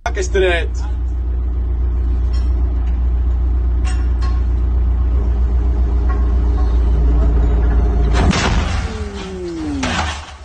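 A machine's engine runs steadily while a large tractor tyre is inflated; about eight seconds in, the tyre bursts with a loud blast, an explosive failure while being blown up without a safety cage or rack around it. A tone falling in pitch follows the blast.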